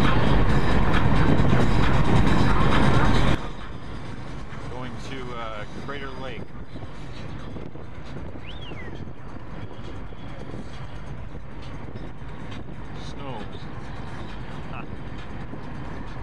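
Road and engine noise heard from inside a moving car's cabin, loud at first and dropping sharply about three seconds in to a quieter steady rumble, with faint voices over it.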